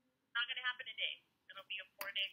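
A woman's voice heard over a phone line, thin and narrow-sounding, talking for about a second and then a few short words near the end.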